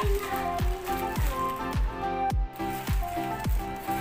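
Background music with a steady thumping kick-drum beat, about one beat every 0.6 seconds, under sustained synth-like tones.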